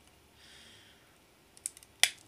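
Quiet handling of a plastic miniature, with a few small, sharp clicks near the end as the loosely glued model is worked off its base.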